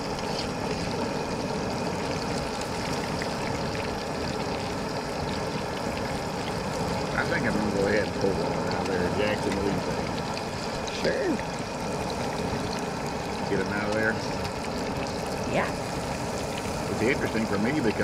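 Pieces of carp deep-frying in a pot of hot oil over a propane burner, with a steady sizzle throughout.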